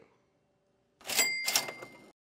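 Cash register 'ka-ching' sound effect: a clatter about a second in, with two strikes and a bell ringing on until it cuts off suddenly.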